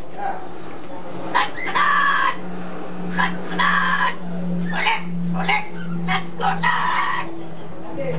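Amazon parrot squawking: a run of about eight loud calls, some short and some held for about half a second, coming at uneven intervals.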